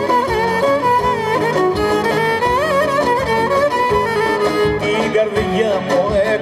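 Live Greek folk band playing an instrumental passage between sung verses: a violin carries an ornamented, sliding melody over a steady rhythmic accompaniment.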